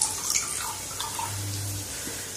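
Refined cooking oil poured in a thin stream into a steel pot of water, a soft trickle with a few small splashes.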